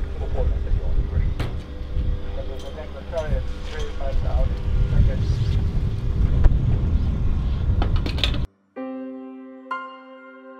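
Aircraft refuelling from an avgas pump: a steady hum from the fuel pump under wind rumbling on the microphone, with faint voices. It cuts off abruptly about eight and a half seconds in, and soft piano music begins.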